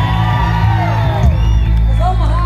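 A live rock band playing loudly over a steady, heavy low bass drone, with crowd voices whooping over it.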